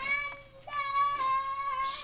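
A high, held voice-like call: a short note, a brief break about half a second in, then a longer note that falls slightly in pitch.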